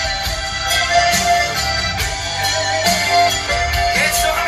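Live band playing an instrumental passage of an Austrian folk-pop song led by a diatonic button accordion (Steirische Harmonika), held chords over a steady beat.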